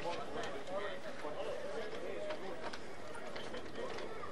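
Faint, overlapping, indistinct voices of players and spectators talking around an outdoor football pitch during a pause in play.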